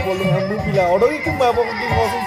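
Music playing with a group of men's voices calling and chanting over it in rising and falling cries.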